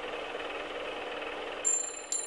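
Logo-animation sound effect: a steady mechanical rattling whir, then a bright, high bell-like ding about a second and a half in.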